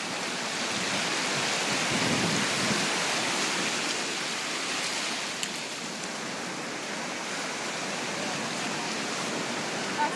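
Surf breaking and washing through shallow water at the shoreline, a steady rush of noise that swells about two seconds in and then eases.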